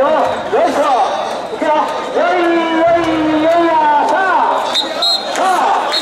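Mikoshi bearers' voices calling out together as they carry the portable shrine, overlapping shouts with some long drawn-out calls in the middle.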